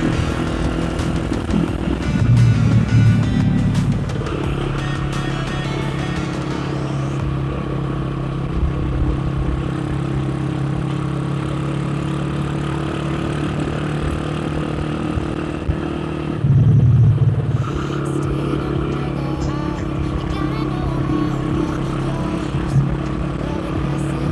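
Modified 120cc Honda C70 engine running steadily while riding in town traffic, swelling louder twice: about two seconds in and again about sixteen seconds in. Music is heard with it.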